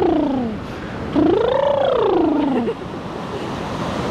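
A person's wordless voice: a short call falling in pitch, then a long call that rises and falls, with the steady wash of surf underneath.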